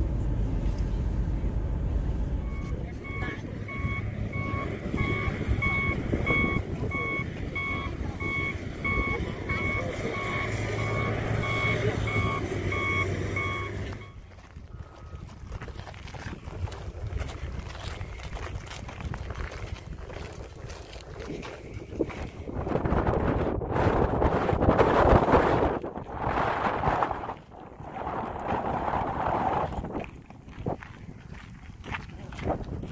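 Shuttle bus engine running, with a reversing alarm beeping at a steady rate of about two beeps a second, heard from inside the bus. The beeping and engine cut off about halfway through, and gusty wind buffets the microphone, loudest near the end.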